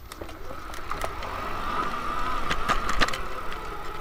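Bafang Ultra Max 1000 W mid-drive motor on a fat-tire ebike whining under load as it pulls from a standstill up a short, steep hill in first gear, the whine rising slightly and growing louder. A few sharp knocks come through about a second in and again near the end.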